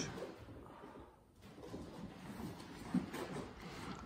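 Faint, irregular shuffling and rustling of two people moving about on a wooden gym floor during a pause in the exercises, with one short low sound just before three seconds in.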